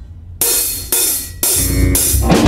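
Rock drum kit: three loud crashes about half a second apart, cymbals with a bright wash, the last one with a deep kick drum under it.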